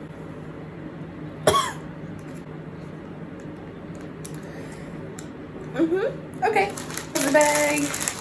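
Crushed dry ramen noodles rattling as the snack bag is shaken to mix in the seasoning powder, a dense rapid rattle that starts near the end and grows louder. Before it there are only a few short wordless vocal sounds over a quiet room.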